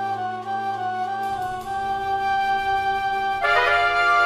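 Instrumental music, the intro of the backing track: a flute-like melody of long held notes over a low sustained layer, with fuller, louder organ-like chords coming in near the end.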